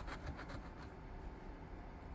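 A coin scratching the latex coating off a lottery scratch-off ticket: faint, quick scraping strokes as a number spot is uncovered.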